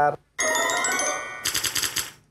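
Game-show electronic sound effect for the survey answer board: a bright synthesized chord held for about a second, then a rapid rattling pulse of high tones.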